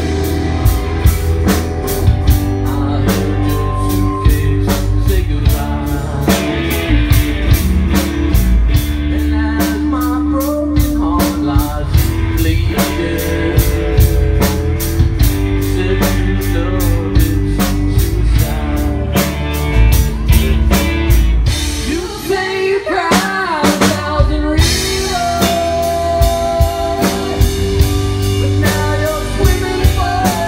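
Live rock band playing loud through a PA: a male singer over electric guitar and a drum kit with steady cymbal strokes. About two-thirds of the way through, the drums drop out for a couple of seconds, leaving voice and guitar, then come back in.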